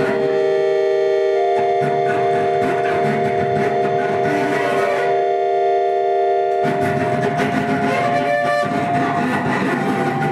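Free improvisation for button accordion, bowed double bass and a guitar played flat on the lap: several long notes are held together as a steady chord. About two-thirds of the way through, the held chord thins and a rougher, denser texture takes over.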